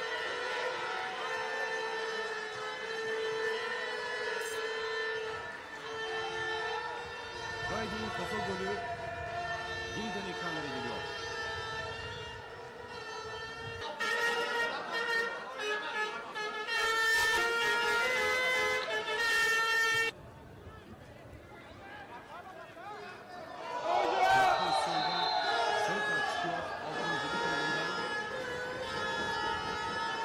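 Football supporters blowing horns: several steady horn tones overlapping, with voices underneath. The sound cuts off abruptly about two-thirds of the way through and returns louder a few seconds later.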